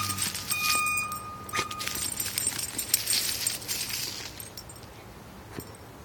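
A dog digging in soil and bark mulch, its paws scratching and scraping, with a metallic jingling and ringing in the first two seconds. The scratching dies down to quiet near the end.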